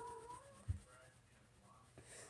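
A kitten's short, faint mew at the start, then a single low thump about two-thirds of a second in.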